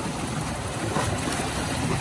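Steady wind on the microphone and surf washing at the shoreline.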